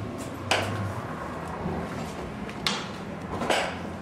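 A wooden door being unlatched and opened, with three sharp clunks: one about half a second in and two near the end.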